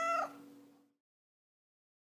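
A tabby cat meowing once: a short call that rises and falls in pitch and ends within the first second.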